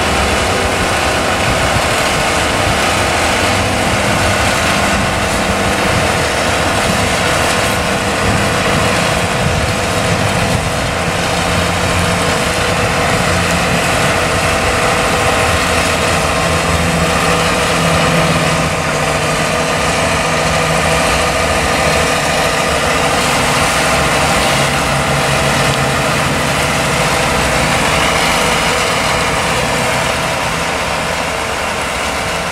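Engine of a rail track-laying work train running steadily as it moves slowly along the track, its low engine note shifting slightly in pitch now and then.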